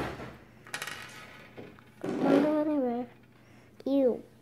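Sharp plastic clicks of a felt-tip marker's cap being pulled off and handled: one click at the start, then a quick cluster of small clicks about a second in. A brief wordless voice sound follows midway.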